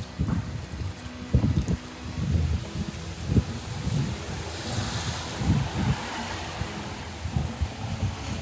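Wind buffeting the camera microphone in irregular low gusts. Around the middle, a rushing hiss swells and fades: a car's tyres passing on the wet street.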